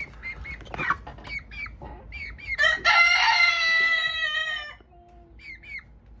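Young chickens giving short high chirps, then one squawk held for about two seconds in the middle, then a few more chirps. They are excited as they grab at a dead mouse dangled above them.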